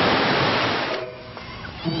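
Heavy splashing of swimming-pool water, the churning dying away after about a second.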